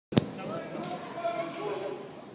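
A single sharp thump just after it begins, then voices talking indistinctly.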